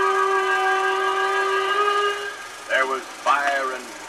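A long, steady held musical note from an old film soundtrack, fading out about two seconds in; a voice starts near the end.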